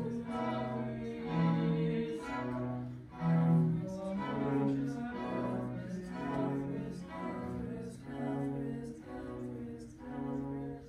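Small string ensemble of violins and cellos playing a slow passage of long bowed notes, the chord changing about once a second over a low cello line.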